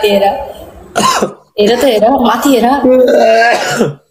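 A person's voice vocalising in long drawn-out stretches with gliding pitch, the longest running from about a second and a half in to near the end. No words were recognised in it.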